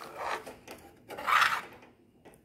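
Metal ladle stirring thick kheer in a metal pan, scraping and squelching against the pan in two strokes, the louder one about one and a half seconds in.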